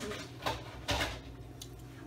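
A utensil scooping food on a ceramic plate, with two short clinks or scrapes about half a second and a second in.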